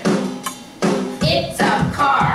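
Children's English vocabulary song playing, with a drum beat and singing in short phrases.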